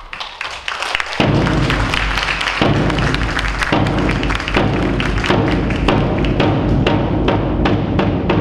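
Brass band with bass drum and snare striking up a cheer march: a few sharp strikes, then the full band comes in loud a little over a second in, with a steady drum beat.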